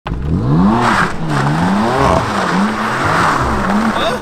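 BMW M4's twin-turbo inline-six revving up and falling back about four times as the car is drifted, with its tires squealing on the pavement.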